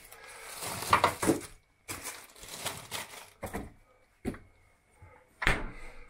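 Food packages and containers being handled and put onto refrigerator shelves: a series of short rustles and knocks with pauses between them, and a louder thump near the end.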